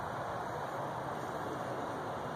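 Steady outdoor background noise: an even hiss with no distinct events and no pecking heard.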